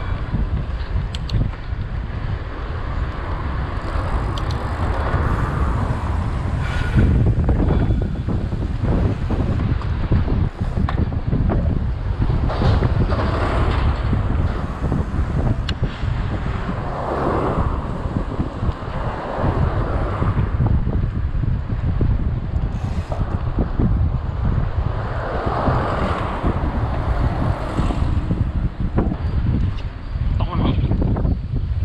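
Wind buffeting the microphone of a camera riding on a moving mountain bike: a loud, continuous rumble with brighter swells every few seconds.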